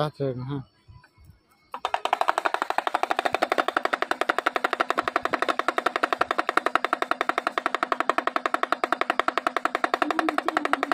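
Damru, a small hourglass pellet drum, shaken rapidly: its pellets beat the two heads in a fast, even rattle with a steady pitched drum tone, starting about two seconds in.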